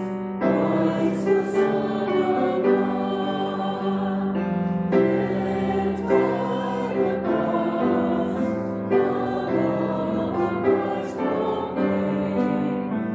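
A group of voices singing a hymn together, sustained notes moving in steps about once a second.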